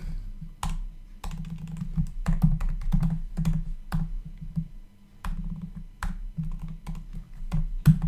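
Typing on a computer keyboard: quick, irregular keystroke clicks, with a brief pause about five seconds in.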